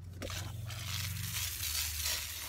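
Garden hose sprayer spraying water over a colander of freshly picked roselle calyxes to wash ants off: a click as the trigger is squeezed, then a steady hiss of spray.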